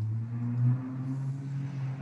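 A steady low hum with a few faint overtones. It swells in just before and holds level throughout.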